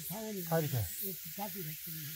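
A man's voice talking in short phrases over a steady faint high-pitched hiss.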